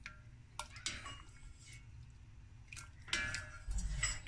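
Faint background music with a few light clicks and small water sounds from a spoon stirring cooked tapioca pearls in a pot of water.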